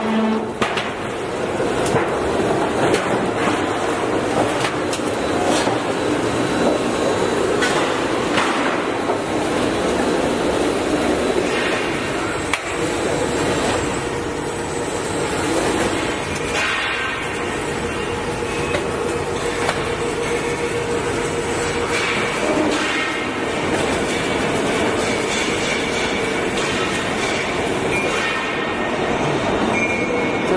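Hidden-joint roof panel roll forming machine running, its steel forming rollers driven in a steady mechanical clatter with a constant hum and occasional clicks.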